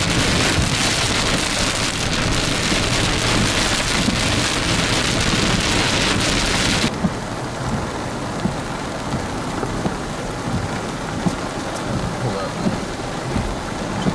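Heavy rain pouring on a vehicle in a thunderstorm, a loud dense hiss. About halfway in, an abrupt cut gives way to lighter, steady rain with scattered drop ticks.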